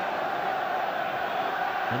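Football stadium crowd: a steady, even wash of many spectators' voices during open play.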